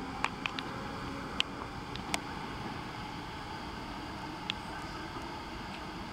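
Steady running rumble of a Sydney Trains Waratah electric train pulling away from the station, with a few short, high-pitched clicks or squeaks over it.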